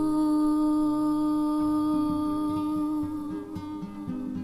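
Song: one long held vocal note fading after about three seconds, with fingerpicked acoustic guitar notes coming in under it about a second and a half in.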